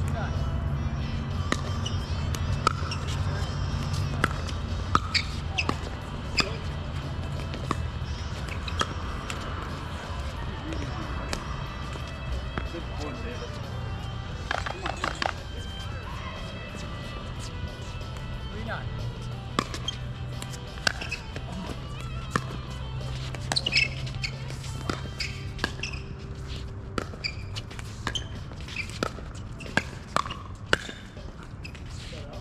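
Pickleball paddles striking a hard plastic ball: sharp pops at irregular spacing through the rallies, coming in quicker runs near the end during a close exchange at the net. A steady low hum runs underneath.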